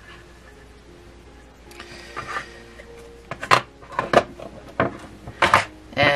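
Hands handling a crocheted panel and plastic locking stitch markers: a short rustle about two seconds in, then several sharp clicks over the last three seconds.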